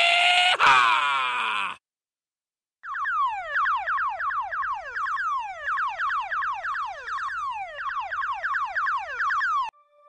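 Electronic sound effect: a short rising sweep, then after a brief silence a long run of rapid falling whistle-like tones, several a second, like a toy alarm.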